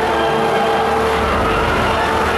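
Stage wind machine blowing paper snow over the audience in a steady loud roar, with faint held notes of music underneath.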